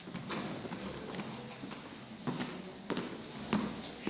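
Footsteps on a hard floor: a few scattered, irregular taps over quiet room noise.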